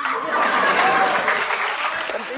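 Studio audience applauding; the clapping starts suddenly and holds steady.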